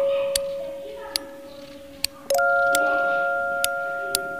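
Kitchen knife slicing potatoes on a plastic cutting board: sharp clicks at uneven intervals as the blade meets the board. Under them, background music with long ringing bell-like notes, a new chord struck about halfway through.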